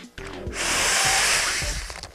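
A long breath blown into a plastic Ziploc bag to inflate it, starting about half a second in and lasting about a second and a half.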